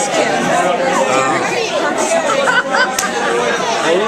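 Many people talking at once in a busy room, overlapping voices of a crowd's chatter. A single sharp click sounds about three seconds in.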